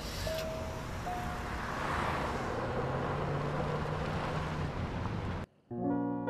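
Car engine running with road noise, its low note rising a few seconds in, then cutting off suddenly near the end.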